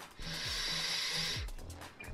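A draw on a HorizonTech Arctic V8 Mini sub-ohm tank with a 0.3-ohm coil fired at only 30 watts: a steady airy hiss of air pulled through the tank, lasting about a second. Background music with a low bass line runs under it.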